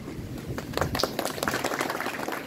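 A group of people clapping, scattered hand claps starting about half a second in and growing denser.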